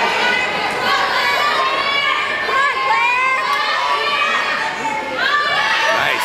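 A crowd of young spectators shouting and cheering encouragement, many voices overlapping, with a burst of high rising cheers near the end.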